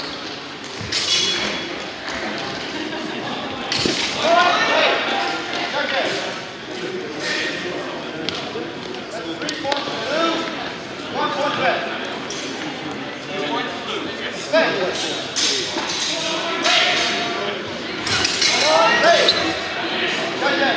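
Steel rapiers and daggers clashing in a few sharp, ringing strikes, about a second in and again near the end, with voices calling out between them. Everything echoes in a large sports hall.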